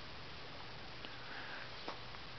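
Quiet, steady background hiss, with a brief soft noise about a second and a half in.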